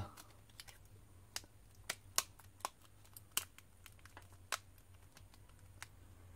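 Plastic rear frame of a Samsung Galaxy S4 mini being pressed onto the phone, its clips snapping into place in a run of sharp, irregular clicks, about ten over several seconds.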